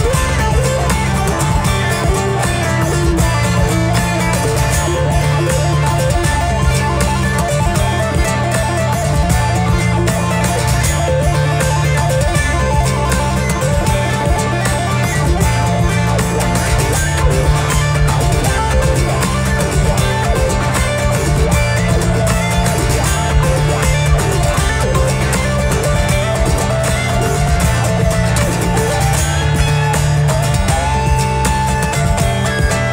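Steel-string acoustic guitar played solo in percussive fingerstyle: a busy picked melody over ringing bass notes, with slaps and taps on the strings and body running steadily throughout.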